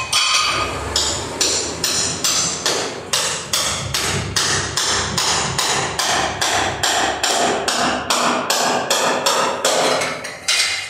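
Hand hammer striking ceramic floor tiles to break them up and knock them loose from the concrete subfloor, in a steady run of sharp blows, about three a second.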